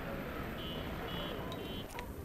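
Outdoor street ambience: a steady low rumble with faint distant voices. In the second half, three short high electronic beeps, about half a second apart.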